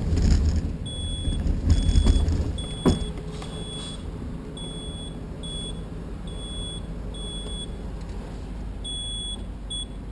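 Electronic beeping: a high, steady tone sounding about ten times in short beeps of roughly half a second, at uneven intervals. Under the first few seconds there is heavy low rumble on the microphone, and a single sharp knock comes about three seconds in.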